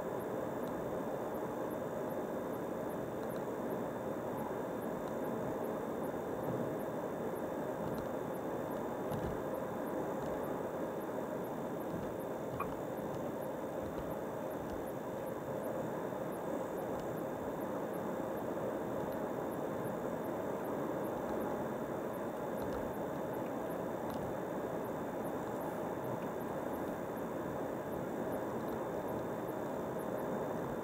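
Steady road and tyre noise heard from inside a car cruising at highway speed, with a faint high steady tone running under it.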